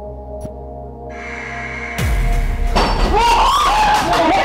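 Tense background music holding steady tones, then about halfway through a sudden loud crash with a low rumble falling in pitch, as a glass falls off the bar. Right after it, people cry out in alarm.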